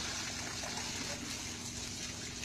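Water spraying steadily from a car-wash spray wand onto a person and the wet concrete, an even hiss with a faint steady low hum underneath.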